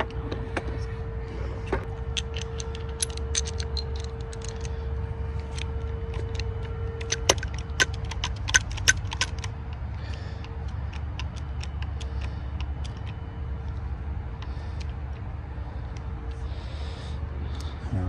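Sharp metallic clicks and clinks as a hand hydraulic lug crimper and other hand tools are handled and the crimper's die is fitted over a cable lug. A cluster of louder clicks comes about seven to nine seconds in, over a steady low rumble.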